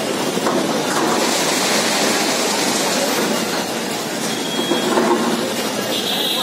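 Excavator demolishing a masonry shop building: a continuous clatter and crash of falling rubble and debris, loudest between about one and three and a half seconds in, over the noise of a watching crowd.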